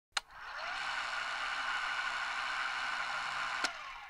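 Intro logo sound effect: a click, then a steady mechanical whirring hiss that fades in quickly and holds, cut off by a second click shortly before the end.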